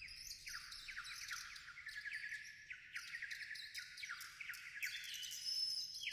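Pipes imitating birdsong: overlapping high chirps and quick trills, with a few held whistled notes, on their own without the orchestra.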